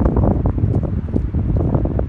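Wind blowing across the microphone, an uneven low rumble that is loud throughout.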